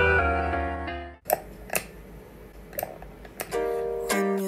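Background music with plucked strings and keys: one track fades out about a second in, a few sharp clicks sound in the quieter gap, and another track begins near the end.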